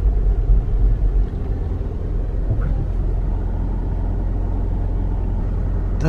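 Low, steady rumble of a car heard from inside its cabin as it creeps slowly up to an entrance gate. It is heavier for the first second or so, then settles to an even hum.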